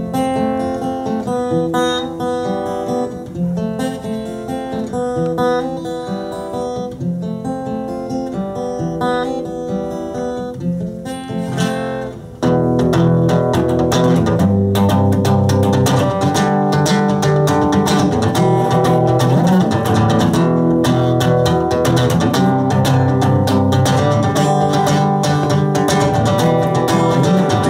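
Solo acoustic guitar playing an instrumental introduction. For about twelve seconds single notes are picked one after another. Then the guitar turns abruptly louder and fuller, strummed chords.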